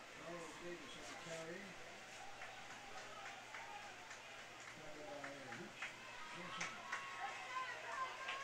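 Faint voices calling out across a football field, with scattered clicks over a low steady hum.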